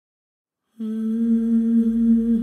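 After silence, a voice starts humming one steady low note just under a second in, held with a faint low rumble beneath it.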